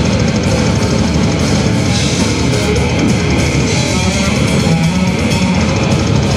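Metal band playing live: distorted electric guitars over fast, steady drumming on a drum kit, loud and continuous.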